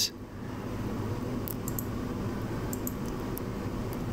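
Steady low background noise with several faint, short clicks of a computer mouse.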